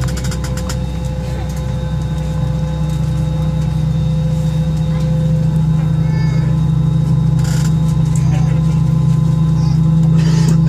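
Steady cabin hum inside an Airbus A320 standing on the apron, a strong low drone with several unchanging tones above it, slowly growing louder. A few clicks sound near the start.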